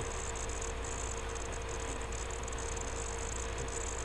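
Steady background hum and hiss (room tone) with a faint constant tone and no distinct events.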